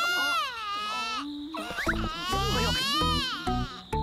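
A cartoon baby crying in two long, rising-and-falling wails, over background music whose bass notes come in about halfway through.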